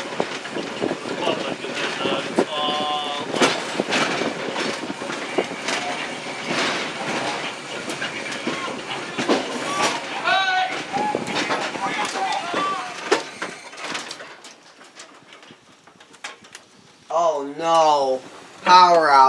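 Open-air electric trolley car rolling along the track, its wheels clacking over rail joints and switch points, growing much quieter about 14 seconds in.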